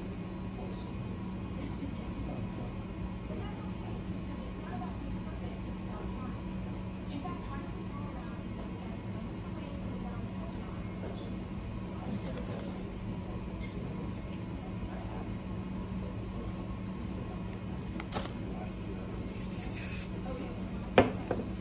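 Steady low room hum with faint television sound behind it. Near the end comes a brief hiss from an aerosol hairspray can being sprayed onto the hair.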